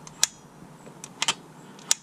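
Hybrid Racing slim metal oil cap clicking as its flip-up lid is popped open and snapped shut on the valve cover: four sharp clicks, two of them close together a little past the middle.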